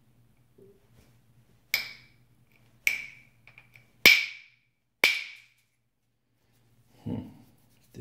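A copper bopper striking the edge of a Flint Ridge flint preform in percussion flaking: four sharp, ringing clicks about a second apart, the third the loudest. The blows don't take the flake off the way the knapper wanted.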